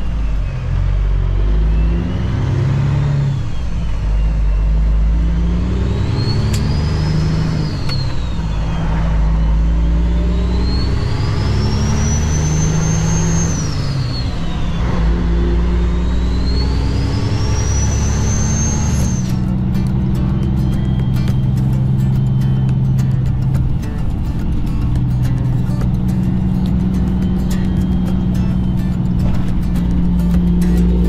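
Cummins ISX diesel of a Kenworth W900L semi truck pulling away and working up through the gears. The engine pitch drops with each shift, and a high turbo whistle rises and falls several times. About two-thirds of the way through, the sound changes to a steadier engine drone with crackling wind noise.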